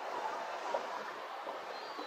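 Steady outdoor city background noise heard from a balcony above a street, a low even hiss of distant traffic and town sounds with no distinct events.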